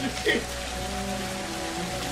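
Water pouring in a steady stream into a glass tank, splashing continuously, with low held music notes underneath.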